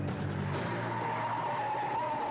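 Car tyres squealing as the car slides sideways while drifting: one long squeal starts about half a second in and falls slightly in pitch. Background music plays under it.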